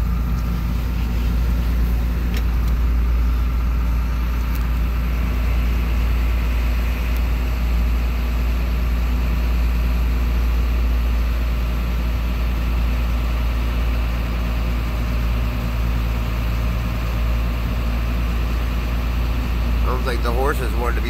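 Big truck's engine running steadily at low speed, heard from inside the cab as a constant low hum.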